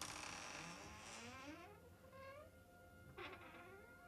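A door's hinges creaking as it swings slowly open: one long creak falling in pitch, then a second, shorter creak about three seconds in.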